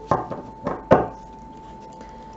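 Tarot cards being laid down on a wooden tabletop: four quick knocks within the first second, the last the loudest. A faint steady tone runs underneath.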